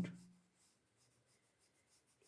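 Faint strokes of a black pen on paper, shading a dark area of a drawing.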